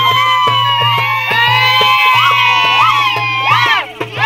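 Clarinet playing folk dance music: a long held note, breaking into quick ornamented turns near the end, over a low accompaniment.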